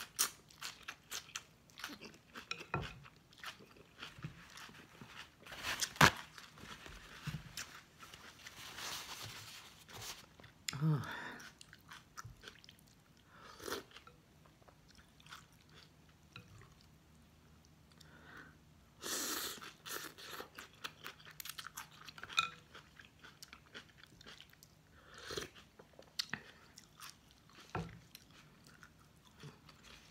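Close-up eating of pho: rice noodles slurped in, then steady chewing and crunching of noodles and bean sprouts, with scattered sharp clicks and a few longer slurps.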